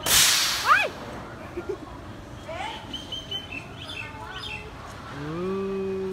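A sudden loud hiss at the start from the Boomerang roller coaster in its station, then a short high cry that rises and falls. Brief chirps follow in the middle, and a person's drawn-out voice comes near the end.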